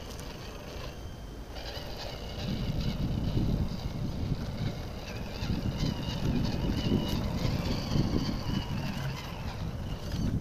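Tamiya CR-01 RC crawler's electric motor and gearbox whining faintly as it crawls over dirt, under a louder, uneven low rumble that picks up about two and a half seconds in.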